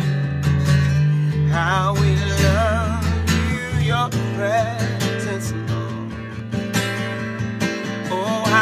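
A man singing held, wavering notes while strumming a cutaway acoustic guitar, the chords ringing under his voice.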